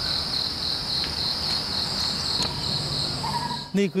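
Insects in the orchard trees making a steady, high-pitched chirring that pulses about four times a second, over low background noise.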